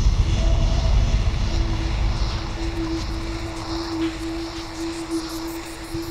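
Dark ambient dungeon music: a deep rumbling drone that fades over the first couple of seconds under a single steady held tone.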